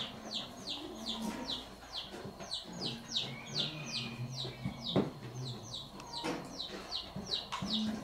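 Chicks peeping steadily, short high falling peeps about three a second, over a hen's low clucking. A single sharp tap about five seconds in.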